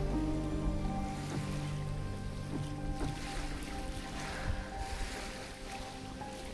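Soft background music of long held notes, with the wash of waves on the shore underneath.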